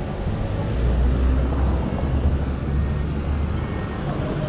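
City street traffic, with a low rumble that swells about a second in and eases before the end, as a vehicle passes close by.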